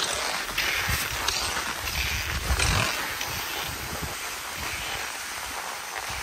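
Cross-country skis and poles on a groomed snow track: an uneven run of swishes and pole plants, with wind rumbling on the microphone.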